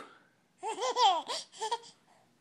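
A five-month-old baby laughing: a quick run of short, high-pitched bursts, each rising and falling in pitch, lasting a little over a second.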